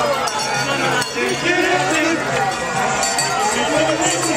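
Many voices at once from parade marchers and onlookers, talking and calling out, with light clinking and jingling scattered among them.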